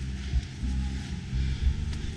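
Steady low rumble with a few dull knocks.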